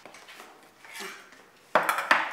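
Tableware being handled on a tabletop: a few light clinks, then a sudden loud clatter near the end as a tin or mug is set down.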